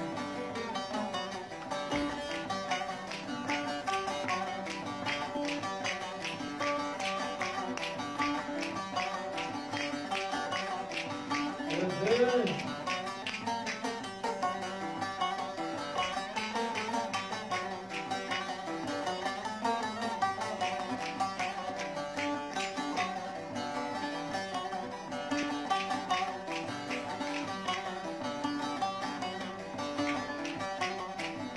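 Bağlamas (long-necked Turkish lutes) playing a folk dance tune for Ankara seymen dancers, plucked in a steady quick rhythm over held ringing tones. A voice calls out briefly about twelve seconds in.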